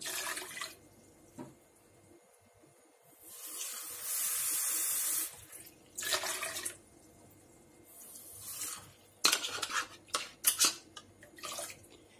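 Water poured from a measuring cup into a metal pot of barbecue sauce, heard as three pours, the longest about two seconds. Near the end comes a run of light clicks and knocks as the cup hits the pot.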